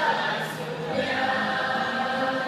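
A large mixed group of young men and women singing together as a choir, holding sustained notes, with a new phrase starting about a second in.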